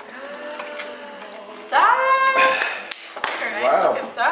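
A high-pitched voice vocalizing without words: a long held note about two seconds in, then short rising-and-falling calls near the end.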